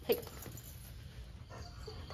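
A dog gives one short bark right at the start, then only low background sound.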